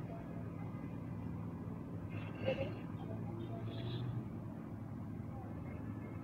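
Scissors and fabric being handled as cloth is cut, heard as two faint short snips or rustles, about two and a half and four seconds in, over a steady low hum.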